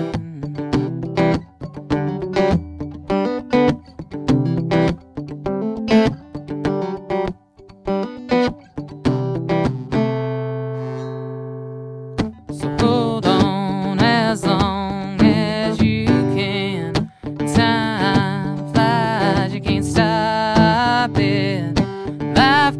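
Instrumental break of an acoustic song: acoustic guitar picked and strummed, with one chord left ringing and fading about ten seconds in. Fuller strumming then resumes, with a wavering melody line over it.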